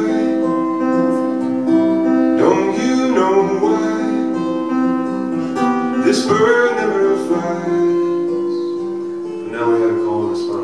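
Acoustic guitar playing held, ringing chords, with a man singing short phrases over it about two and a half seconds in and again about six seconds in.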